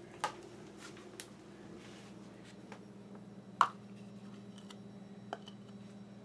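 A metal spoon scraping and tapping cake batter out of a plastic measuring cup into paper cupcake liners: a few soft clicks, the loudest about three and a half seconds in, over a faint steady hum.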